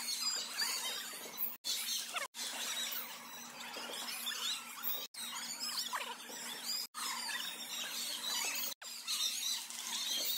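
Athletic shoes squeaking on a gym floor: many short squeaks scattered throughout, over gym background chatter and a faint steady hum. The sound cuts out briefly several times.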